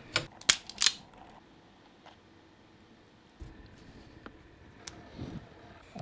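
Three sharp mechanical clicks in the first second, then quiet, with a faint low hum and a few weaker clicks from a little past halfway.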